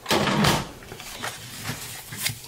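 Cardstock handled on a table: a loud swish of paper sliding across the work surface for about half a second at the start, then softer rustling and creasing as the scored sheet is folded by hand.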